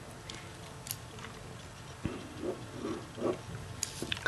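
Quiet handling of a plastic set square and biro on paper: a few light clicks and taps, with short soft scratching strokes in the second half.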